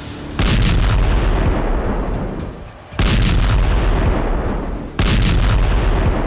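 Rocket artillery firing: three heavy blasts, about half a second in, at three seconds and at five seconds, each trailing off in a long rumble.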